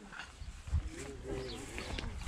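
Faint voices in the distance, with soft footsteps on a gravel track.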